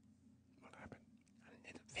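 Near silence with a faint low hum. A quiet, murmured voice comes in about halfway through, and a man starts speaking right at the end.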